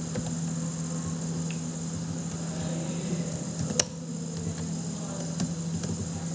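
Steady electrical hum with a high-pitched whine underneath, from the recording setup. A few computer keyboard clicks sound over it as text is erased and retyped, the sharpest about four seconds in.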